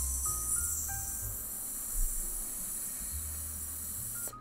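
A long, bright hiss like a drawn-out 'sss', strongest in its first second, over background music with low bass notes and a few faint short tones.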